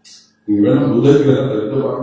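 A man chanting a line in a long, steady sung tone, starting about half a second in after a brief hiss and a short pause.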